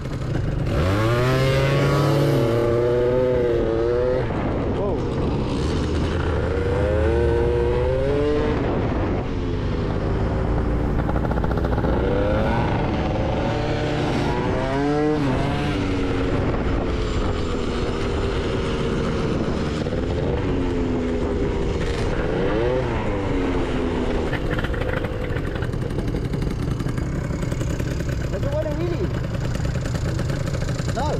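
Two-stroke scooter engines accelerating away and riding along, the engine pitch rising and falling again several times as they rev up and ease off, over steady wind and road noise. The riders take the Gilera Runner's uneven, fluttery rev for a rich mixture with a full carb that bogs down before it clears and pulls.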